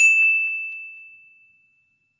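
A single bright, bell-like ding: one strike with a clear high ringing tone that fades away over about a second and a half.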